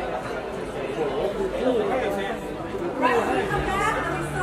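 Indistinct chatter: several voices talking at once, none clear enough to make out words, with one voice coming up louder about three seconds in.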